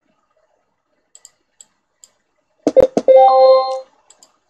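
A few faint clicks, then a couple of sharp knocks and a short electronic chime with a steady pitch and overtones, lasting under a second.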